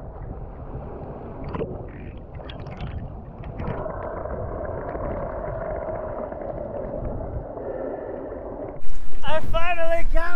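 Muffled water noise from an action camera in a waterproof housing at and below the sea surface, with a steady hum through the middle part. About nine seconds in, a much louder voice-like sound with wavering pitch cuts in.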